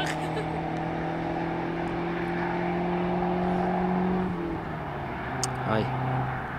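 Two small cars, a Fiat Uno 1.4 turbo and a VW Polo 1.9 TDI, accelerating hard away in a drag race, their engine note slowly rising, then dropping to a lower pitch about four seconds in.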